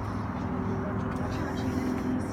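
Steady low rumble of motor vehicles outside, with a faint hum running through it.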